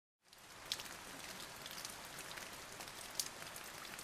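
Rain falling on a shallow puddle, a faint steady patter with a few louder single drops, fading in from silence at the start.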